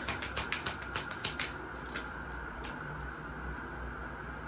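Tarot deck being shuffled by hand, a quick run of card-on-card clicks that stops about a second and a half in, followed by one more click later as a card is pulled.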